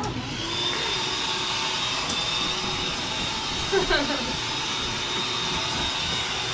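Electric air pump running steadily to inflate an air mattress, a constant blowing motor noise with a steady high whine.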